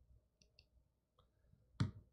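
Two faint, short clicks of a handheld presentation remote being pressed to advance a slide, in a quiet room, followed by a brief louder sound near the end.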